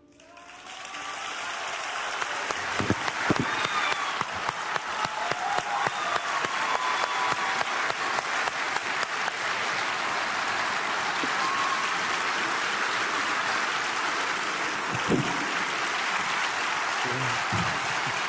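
Large theatre audience bursting into applause as a solo piano piece ends. It swells within about two seconds into sustained, dense clapping, with scattered shouts over it in the first few seconds.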